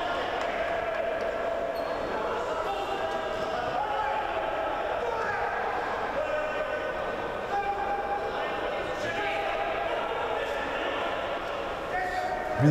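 Steady murmur of spectators' voices and calls in a sports hall.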